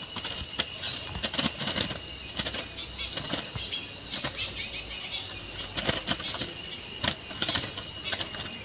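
Steady high-pitched drone of forest insects, with scattered small clicks and light splashes from hands working in shallow stream water.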